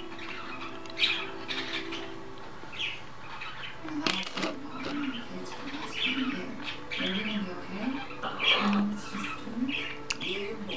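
Pet parrot chirping and squawking in short, repeated calls.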